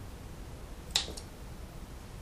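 Scissors snipping once through an autumn olive stem, a sharp snip about a second in, followed by a fainter click.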